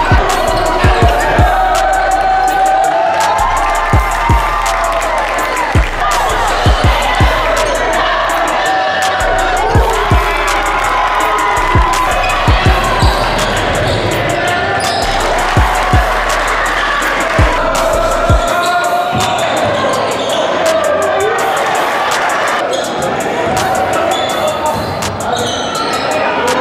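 Hip-hop style music with deep bass notes, punchy kick drums and a vocal line; the bass and kick drums drop out about 18 seconds in.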